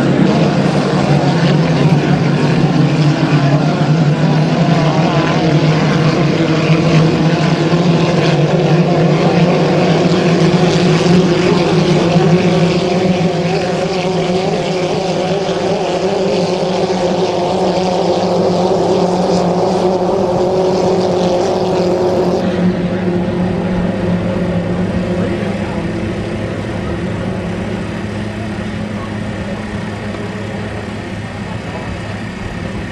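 Several 2.5-litre class racing hydroplanes running flat out together: a loud, steady engine drone over a hiss. About two-thirds of the way through the hiss drops away, and the engines fade slowly after that.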